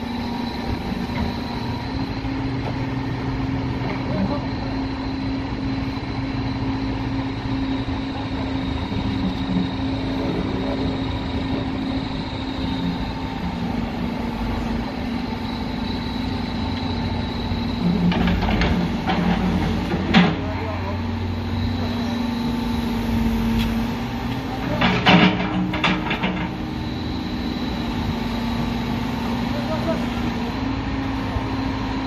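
Caterpillar backhoe loader's diesel engine running steadily as the rear bucket digs in a trench. Twice, past the middle, the engine note dips as it takes load, with brief louder bursts of noise.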